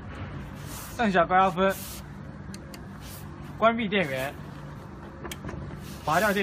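A man speaking two short phrases over a steady low hum, with a few brief rustles in between.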